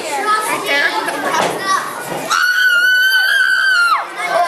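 Mixed chatter from a small crowd with children's voices, then one long, high-pitched scream held at a steady pitch for about a second and a half, dropping as it cuts off near the end.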